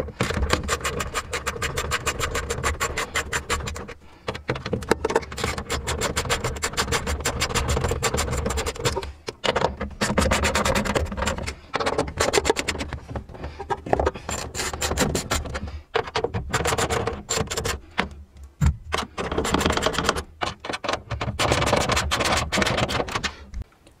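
Socket ratchet clicking in rapid runs that stop and start every few seconds as an 8 mm socket undoes the tail-light bolts one after another.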